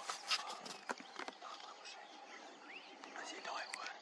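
Hushed whispering between hunters, with a few sharp clicks in the first second or so. A faint steady drone of bush insects and small bird chirps run behind.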